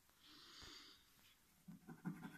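Near silence, with one faint soft breath about half a second in.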